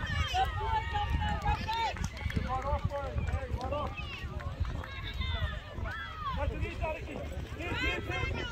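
Several indistinct voices of players and spectators calling and shouting, with no clear words, over a steady low rumble.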